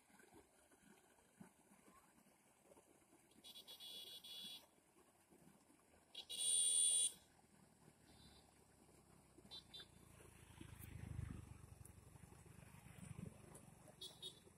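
A vehicle horn sounds twice, a blast of about a second a little over three seconds in and a shorter, louder one around six seconds in, over faint outdoor background. A low rumble swells and fades near the eleven-second mark.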